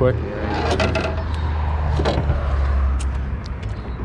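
Light clicks and scrapes as a freshly landed largemouth bass is handled in a small boat, over a steady low rumble.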